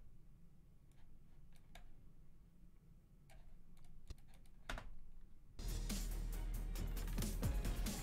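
A few scattered computer keyboard keystrokes and mouse clicks. About five and a half seconds in, the edit's soundtrack music starts playing back, much louder.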